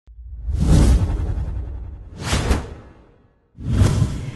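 Whoosh sound effects of a news programme's intro sting: a long swell that fades away, a sharper whoosh about two and a half seconds in, and a third rising shortly before the end, each with a deep low rumble underneath.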